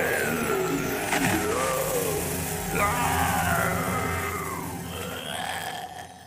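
Cartoon battle soundtrack: a monster worm's wailing cries, sliding up and down in pitch, over energy-beam sound effects and music. It fades away near the end.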